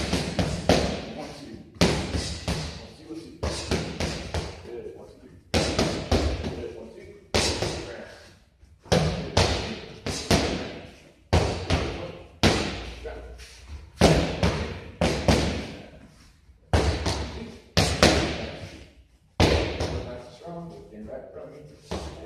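Boxing-gloved punches smacking against focus mitts over and over in quick combinations, each sharp smack trailing off in the echo of a large hall.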